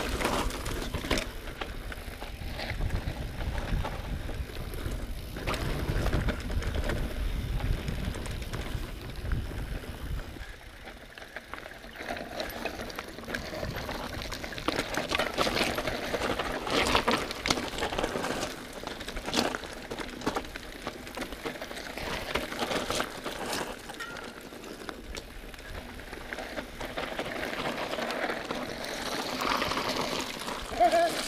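Mountain bike (a Specialized Enduro Elite 29) riding fast down a dry dirt and gravel singletrack: knobby tyres crunching and skittering over loose dirt, with a steady stream of rattles and knocks from the bike over roots and rocks. A low wind rumble on the microphone runs through the first ten seconds or so, then eases.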